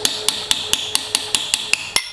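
Hammer rapidly tapping a drift held in the bore of a diesel injection pump body, about five light taps a second, each with a metallic ring. The taps are driving out the Welsh plugs pushed into the bottom of the pump.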